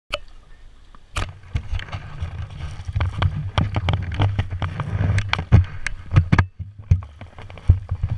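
Jet ski engine idling, a steady low hum, with many sharp knocks and splashes over it. The hum sets in about a second in and falls away near the end.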